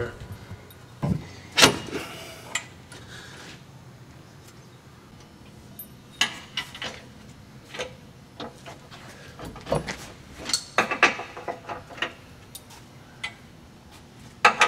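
Scattered metallic clinks and knocks of bolts, hand tools and the steel front cross member of a suspension lift kit as it is fitted and bolted up under a truck, with short clusters of taps rather than any steady sound.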